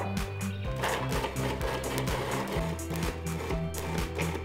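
Background music with a steady beat. From about a second in until shortly before the end, a food processor motor runs underneath it, chopping black beans into a coarse paste.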